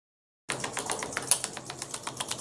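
Rapid mechanical clicking sound effect, about eight clicks a second, starting half a second in after silence.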